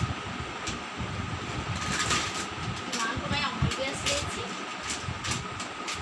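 Plastic-wrapped food packets crinkling in short crackles now and then as they are handled, over a steady background hum with faint voices.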